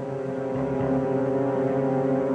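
A low sustained synthesizer chord swells in and then holds steady: a dramatic music sting under a silent reaction shot at the end of a soap-opera scene.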